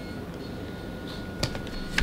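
Quiet indoor room tone with a faint, steady high tone, broken by a single short tap about one and a half seconds in.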